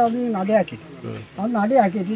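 Speech only: an elderly man talking.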